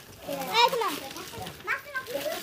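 Children's voices: short excited calls from kids, once about half a second in and again near the end.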